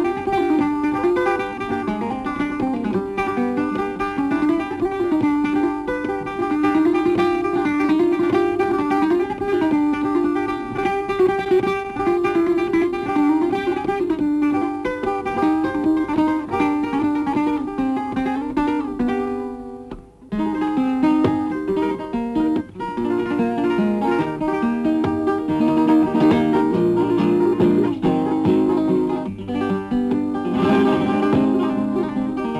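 Solo flamenco guitar playing a soleá: dense runs of plucked notes and chords, with a brief break about twenty seconds in before the playing resumes.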